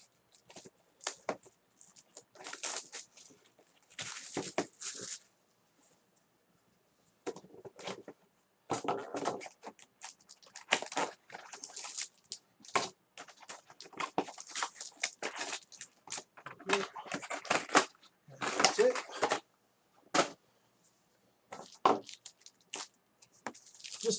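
Trading-card hobby boxes being opened and gold foil card packs handled: a string of short, irregular crinkles, rustles and cardboard scrapes. There is a pause of about a second and a half a little over five seconds in.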